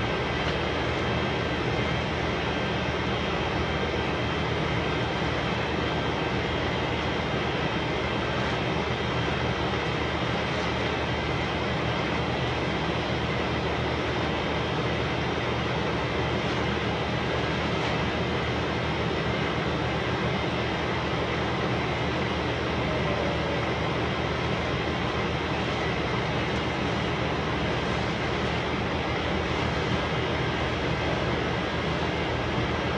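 Steady machine noise: a constant hum with an even hiss over it, unchanging in level throughout.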